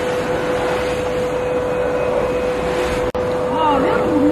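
Factory machinery running with a steady hum and one constant whine, broken by a momentary dropout about three seconds in.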